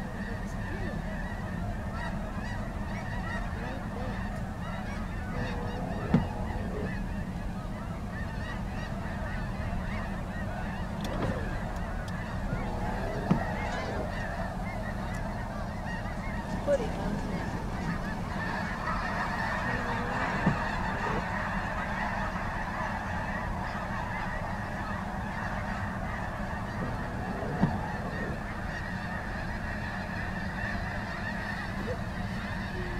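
A large flock of snow geese honking continuously, countless calls overlapping into a dense din, over a steady low rumble. A few brief sharp knocks stand out above the flock.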